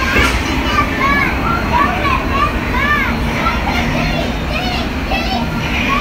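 Children squealing and shrieking excitedly, short high voices rising and falling in quick succession, over a steady rushing background noise.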